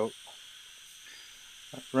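Spray gun (SATAjet RP, set at 30 PSI) spraying base coat: a faint, steady hiss of air and paint mist.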